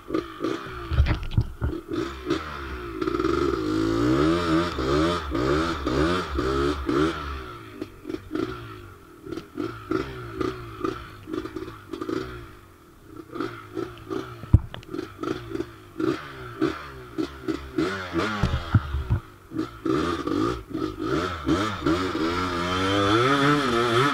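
Honda TRX250R quad's two-stroke single-cylinder engine being ridden hard, its pitch rising and falling as the throttle is worked, with quick repeated blips in places. A single sharp knock about halfway through.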